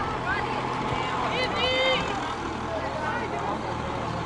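Shouted calls across a football pitch: scattered short voices and one high, drawn-out call about a second and a half in, over a steady low hum.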